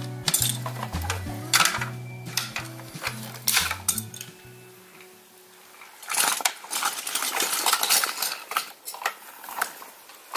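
Plastic toy building bricks clattering and tumbling as a toy front-loader's grapple scoops and drops them, with a dense run of clatter in the second half. Background music with steady low notes plays under the first half and stops about halfway through.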